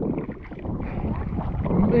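Choppy sea water sloshing and slapping around a camera held at the surface, with wind on the microphone.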